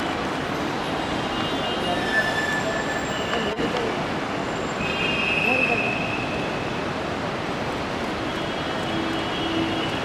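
Steady din of a busy airport drop-off area: traffic and crowd noise with no let-up, crossed by a few brief high squeaks, the longest about halfway through.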